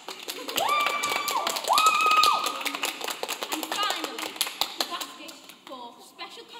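Applause, many hands clapping rapidly, with cheering: two long, high, held whoops in the first couple of seconds. The clapping dies down toward the end.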